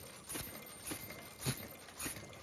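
Automatic mask-making machine running, its press stations knocking in a steady rhythm of about two sharp knocks a second, one cycle per mask at a production rate of about 100–120 masks a minute.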